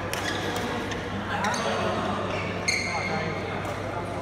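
Badminton rally in a large hall: sharp racket hits on the shuttlecock and a few sudden clicks, with a high squeal of court shoes on the floor about two and a half seconds in, over the chatter of people in the hall.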